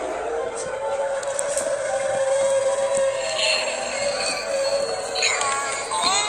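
Background music with one steady held tone, over the noise of a busy shop.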